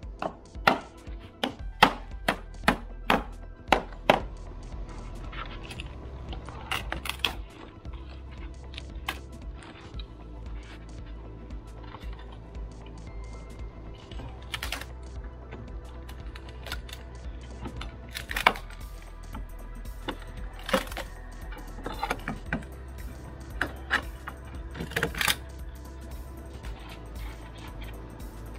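A claw hammer striking a wooden board on a house overhang about eight times in quick succession, roughly two blows a second, then scattered single knocks and cracks as the board is pried loose with a pry bar. Steady background music runs underneath.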